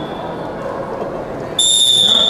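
Indistinct voices murmur in a large hall. About a second and a half in, a referee's whistle sounds one long, steady, high note, signalling the start of a wrestling bout.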